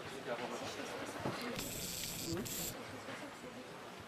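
Indistinct voices murmuring in a large hall, with a hiss lasting about a second, starting about a second and a half in.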